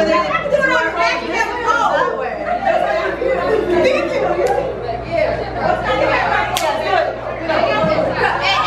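A group of women chattering and talking over one another in a large room, with one sharp click about six and a half seconds in.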